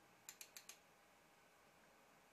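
Four faint, quick clicks within about half a second, like keys being typed on a computer keyboard, over near silence.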